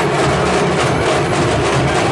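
Procession dhol drums beaten in a fast, dense, loud rhythm.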